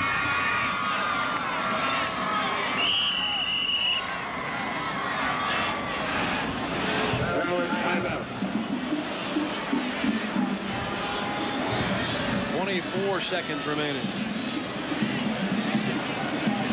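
Football stadium crowd noise: a steady din of many voices with nearer shouts, and a single held high tone about three seconds in.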